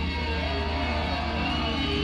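Live rock band on stage: sustained electric guitar notes with slow pitch bends ring over a steady low bass drone.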